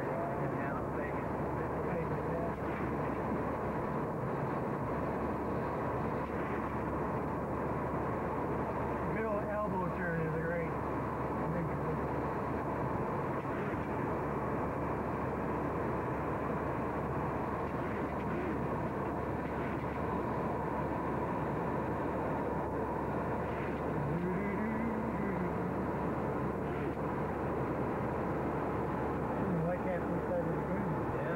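Steady jet airliner cabin noise in cruise flight, an even rushing hum with faint voices now and then.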